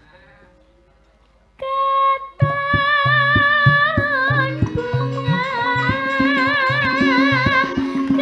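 A young female Javanese singer (sinden) sings through a microphone, entering with a long held note about one and a half seconds in and going on with long, wavering notes. About a second later an instrumental accompaniment joins with a steady run of low pitched strokes.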